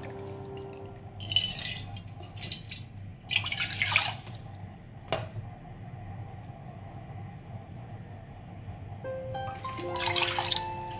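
Water poured from a plastic bottle into a measuring cup, splashing in three short gushes during the first four seconds, with a single click about five seconds in. Soft background music runs underneath.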